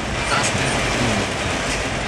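Heavy rain drumming on the roof and windshield of an Isuzu Crosswind, heard from inside the cabin as a steady wash of noise over a low rumble of engine and wet-road tyres.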